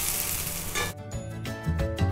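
Dosa sizzling on a hot tawa, a bright hiss that cuts off about a second in, followed by background music with steady notes and a low beat.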